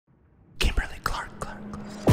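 A breathy whispered voice in a few short, noisy bursts, starting about half a second in after near silence, with a faint low hum under the second half.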